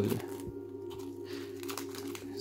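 Thin plastic shrink wrap crinkling softly as it is peeled off a deck of game cards, over a steady low background tone.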